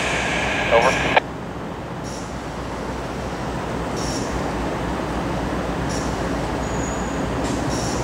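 Diesel locomotives of a slow-moving CSX freight train running, a steady noise that grows gradually louder as the train approaches.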